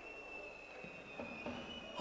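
Faint, steady high-pitched whistling tone over a quiet background, its pitch drifting slightly upward near the end.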